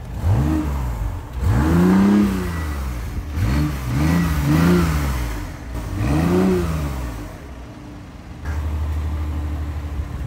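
BMW i8's 1.5-litre turbocharged three-cylinder engine revved in short blips while stationary, about five times, each rising and falling in pitch, then settling to a steady low idle near the end.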